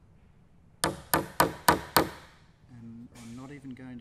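Hammer tapping the top of a wood chisel five times in quick succession, light blows driving the chisel along the marked line of a hinge recess in timber. The blows are kept gentle so the chisel goes in a little at a time without splitting the corner off.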